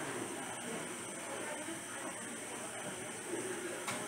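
Steady hiss of air from a tracheostomy breathing line, with faint breathy vocal sounds from a man with a tracheostomy, and a brief click near the end.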